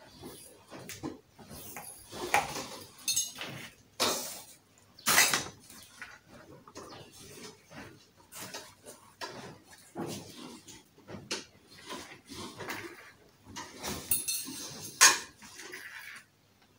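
Fabric wardrobe cover rustling and the steel pipe frame clinking and knocking as the cover is pulled and worked over it, in irregular bursts with a few sharper knocks.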